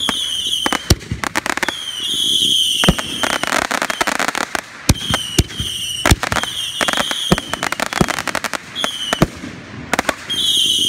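Aerial fireworks bursting overhead: a rapid, irregular series of bangs and crackles. Repeated short, high whistles, each falling slightly in pitch, sound between and over the bangs.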